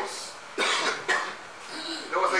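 A man coughing twice in quick succession, a little after the start.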